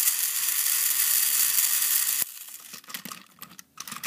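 Battery-powered Trackmaster Thomas toy engine running on plastic track close by: a steady high-pitched whirring hiss from its motor and wheels that cuts off abruptly about two seconds in, leaving faint clicks and rattles.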